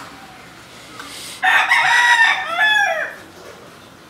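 A rooster crowing once, loud, starting about a second and a half in and lasting under two seconds, the call bending downward as it ends.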